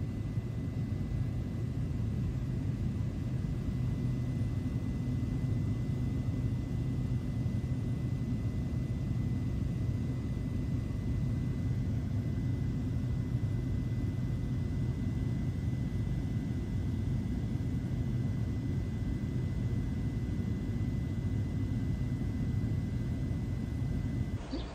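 Cabin noise of a high-wing Cessna in level flight: a steady, low engine and airflow drone with a faint steady high tone over it.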